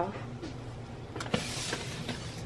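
A click, then a brief rustle about a second and a half in, as a white plastic mailer package is picked up and handled, over a low steady room hum.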